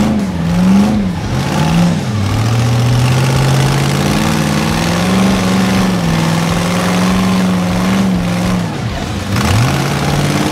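Off-road rock bouncer buggy engine revving hard in quick up-and-down bursts, then climbing and holding high revs for several seconds before dropping off and revving again near the end.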